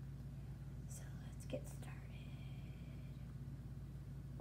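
A child's faint whispering over a steady low hum, with a brief click about one and a half seconds in.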